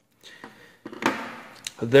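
A metal outside micrometer being handled and set down on a workbench: a couple of light clicks and knocks with a short breathy hiss between them.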